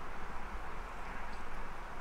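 Steady outdoor background noise in a forest: an even low rumble and hiss with no distinct sounds standing out.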